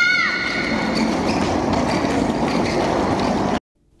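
Homemade electric car driven by a belted electric motor, running across a rink floor: a steady rushing noise of the motor and wheels, with a high held squeal that drops away just after the start. The sound cuts off suddenly near the end.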